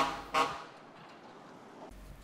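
A short vehicle horn toot about half a second in, then faint, steady street traffic noise.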